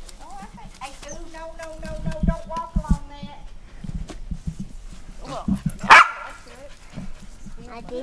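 A dog barking, loudest about six seconds in, after a drawn-out call in the first few seconds.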